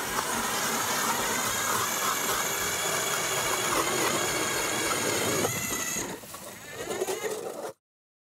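A 40-volt lithium-battery electric ice auger drilling a hole through lake ice: a steady motor whine over the grinding of the bit cutting ice. It winds down about six seconds in, and near the end the sound cuts off to silence.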